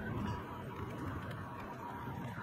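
Faint outdoor city ambience: a low, steady background rumble with no distinct events.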